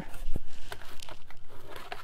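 Hands handling and pressing a folded mat board box blank on a wooden table: light rubbing and small taps, with one sharper knock about a third of a second in.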